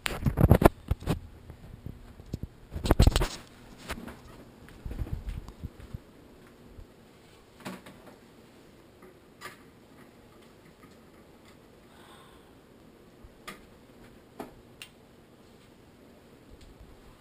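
Loud thumps and rustling of bedding and handling as a person is laid down on a bed, two strong bursts in the first three seconds, then a quiet room broken by a few faint clicks.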